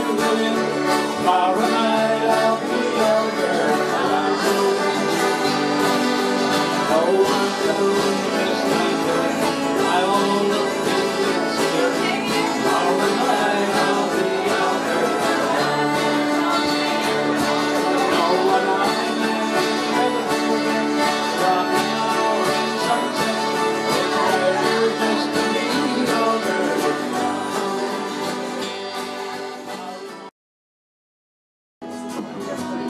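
Small acoustic country band playing an instrumental passage: strummed acoustic guitars under a lead melody line, fading out near the end.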